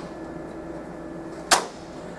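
An office copier's side access door with its duplex unit being pushed shut, closing with one sharp clunk about one and a half seconds in, over a low steady hum.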